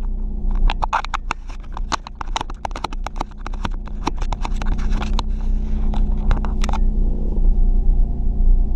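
Car's engine running at idle, heard inside the cabin as a steady low hum, with a rapid, irregular run of sharp metallic clicks and clinks over it that stops about seven seconds in.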